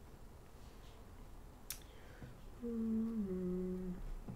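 A woman humming with her mouth closed: one low note held for about half a second, then a step down to a lower note held for another half second or so. A single sharp click comes about a second before the humming starts.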